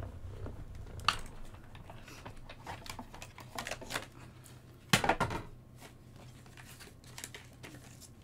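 Clear plastic cutting plates being lifted and knocked against the die-cutting machine, with paper and tape rustling as a die is freed from stamped cardstock. Scattered sharp clicks; the loudest is a cluster of knocks about five seconds in.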